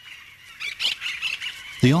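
Austral parakeets screeching: several short, harsh calls in quick succession in the second half.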